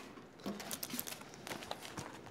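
Quiet rustling and light handling noise of paper file folders being pulled out of a filing drawer, with a few small clicks.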